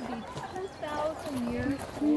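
A person singing a wordless tune on held notes ('to to to'), the pitch stepping up and down between long sustained tones, with a few soft footfalls.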